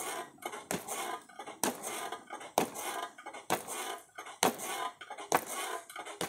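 Punches landing on a hanging heavy bag, about seven blows at an even pace of roughly one a second, each a sharp hit with a short rattle after it.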